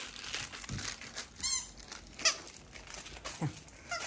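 A squeaky dog toy squeaking once, about a second and a half in, amid rustling and crinkling of plush toys as a Great Dane noses and digs through a wooden toy box.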